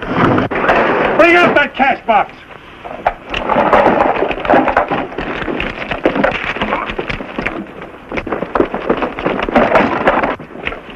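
Men's voices shouting over a loud rushing noise, with scattered knocks and bangs throughout.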